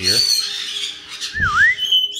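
Caique parrots calling: a shrill squawk near the start, then a clear whistle that dips down and rises back up in pitch about one and a half seconds in, with a dull low thump at the same moment.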